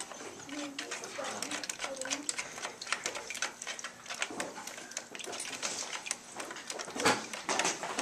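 A hand stirring and squishing homemade glue-and-borax slime in a plastic bucket, making scattered small clicks and taps, with one louder knock about seven seconds in; children's voices murmur quietly in the room.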